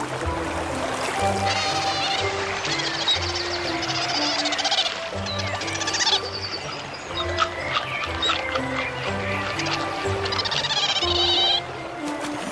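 Background music with low held notes, over which an animal gives high, wavering calls several times: about two seconds in, from about three to six seconds in, and again near the end. The calls are those of river otters.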